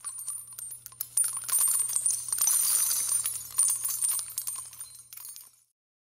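Jingling, tinkling metallic shimmer of many small strikes, like small bells or coins, over a faint low hum. It grows louder about a second in and fades away shortly before the end.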